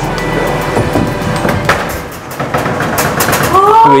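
Background music over the steady rush of an Xtreme Air range hood's squirrel-cage blower running, strong enough to hold a panel up by suction. Voices exclaim near the end.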